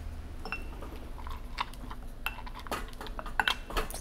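Muddler crushing fresh pineapple chunks in a mixing glass: a string of light knocks and clinks against the glass, thicker in the second half, with one short ringing clink about half a second in.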